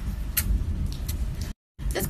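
A steady low rumble with a few faint clicks in a pause between phrases, broken by a moment of total dead silence about one and a half seconds in, a dropout typical of two phone recordings being joined.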